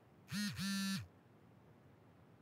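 Smartphone vibrating against the desk surface: two buzzes, a short one and then a longer one, from its vibration motor, signalling an incoming notification.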